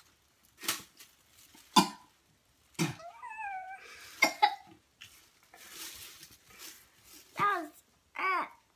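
A girl coughing and retching into a plastic bag in a run of sharp coughs about a second apart, with a short strained vocal sound around three seconds in and a brief 'uh' near the end. She is gagging on a chocolate-covered boiled egg yolk.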